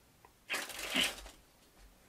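A deck of playing cards run rapidly from one hand into the other: a quick run of card flicks lasting under a second, starting about half a second in.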